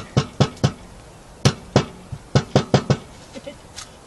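Egg tapped again and again against a hard edge, about a dozen sharp taps in three quick runs and one more near the end. The shell does not crack: a farm egg, taken for having a tougher shell.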